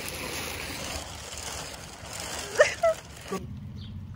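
A steady outdoor rushing noise, with a short burst of a voice about two and a half seconds in. The noise drops off suddenly to a quieter, lower hum near the end.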